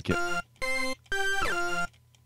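Sampled Farfisa combo organ (the Presence XT 'Far Fisa' preset) playing three notes at different pitches with a reedy tone, the last one held longest.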